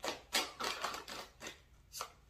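A tarot deck being shuffled by hand: a quick series of short papery flicks and slaps of cards, about half a dozen in two seconds, as a few cards drop out onto the table.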